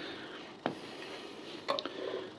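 A few light metallic clicks as a rusty steel coil spring and clutch parts are handled and set down on the clutch backplate: one click under a second in, and a quick cluster of clicks near the end.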